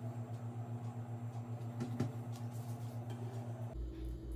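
A kitchen knife pressing down through soft, firm-set chocolate-banana filling, with one short knock of the blade on the wooden cutting board about two seconds in, over a steady low pulsing hum.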